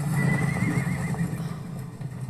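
A horse whinnying: one wavering, high call lasting about a second, over a low rumble.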